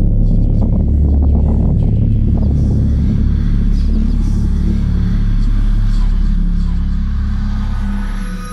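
Loud, deep rumbling drone of horror-trailer sound design under the title card. It holds steady and eases off near the end, with a rough, gritty crackle over it in the first few seconds.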